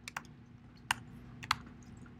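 A few scattered keystrokes on a computer keyboard, slow typing with pauses between keys.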